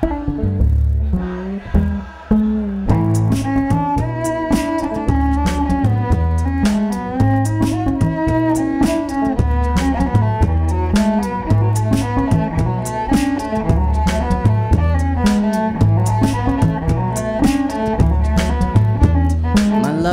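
A bowed cello melody over a repeating looped bass line and a looped beatbox rhythm, which comes in about three seconds in.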